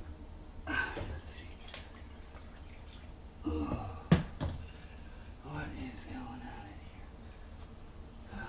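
Handling noise of dishwasher parts inside the tub, with rattles and one sharp knock about four seconds in, under a man muttering to himself.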